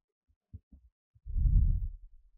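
Breath puffing onto a close headset microphone: a few faint clicks, then a muffled low rumble lasting just under a second in the second half.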